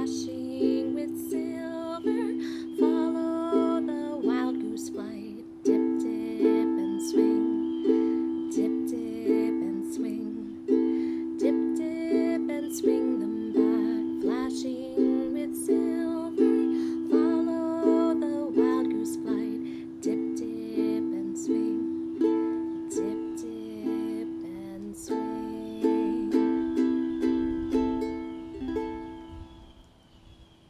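A ukulele's open strings brushed with the thumb on a steady beat, the same A minor seven chord over and over, with a woman singing a slow minor-key folk melody over it. The strumming stops shortly before the end.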